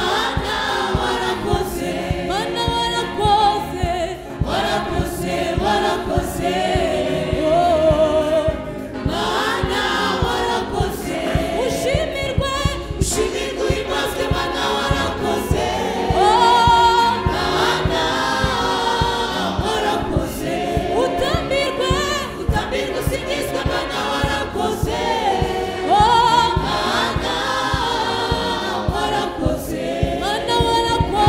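A gospel choir of women's voices singing together into microphones, the melody lines gliding and held over a steady low beat.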